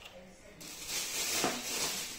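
Thin plastic shopping bags rustling and crinkling as a hand rummages through them, starting about half a second in.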